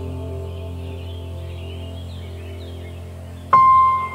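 Soft, slow background music: a held chord slowly fades, then a new bell-like note is struck sharply about three and a half seconds in.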